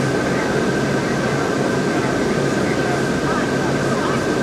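Steady drone inside a motor coach's cabin from the engine and ventilation, with a thin high whine running through it.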